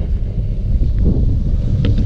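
Wind buffeting the camera microphone, a steady low rumble, with a few faint clicks about a second in and near the end.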